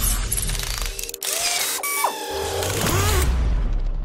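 Title-sequence sound effects: mechanical ratcheting and clicking with short sliding tones and a heavy low rumble, over music.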